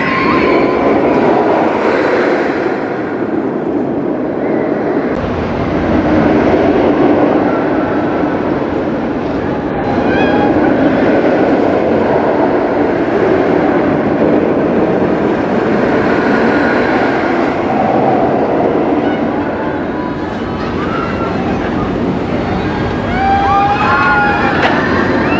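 Roller coaster train running along its track: a steady, loud rumble that rises and falls as the ride goes, with brief voices from riders near the start and the end.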